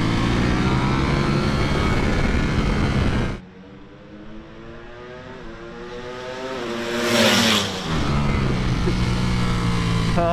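Ducati Panigale V4 S superbikes' V4 engines on track: first a loud, steady onboard engine note at high revs, then about three and a half seconds in the sound drops suddenly to a group of bikes approaching with rising revs. One passes loudly about seven seconds in, followed by several engines running at steady revs.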